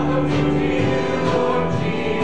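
Church choir singing a Christmas worship song together with a male worship leader, holding sustained chords.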